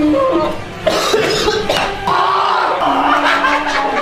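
A man coughing after a mouthful of ramen, with laughter and background music.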